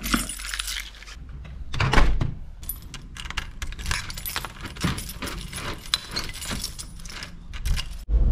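A bunch of keys on a keyring jangling and clinking as they are picked up and then turned in a front-door lock, with a louder thump about two seconds in.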